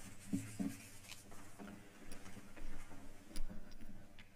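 Sheets of paper being handled and shuffled at a lectern, with a couple of soft knocks early on and a few light ticks.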